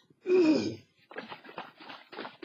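A person's voiced sigh, falling in pitch and lasting about half a second, followed by fainter, irregular, broken sounds.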